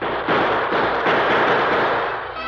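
Radio-drama sound effect of a rapid volley of gunshots, many shots running together. It has the narrow, band-limited sound of an old broadcast recording.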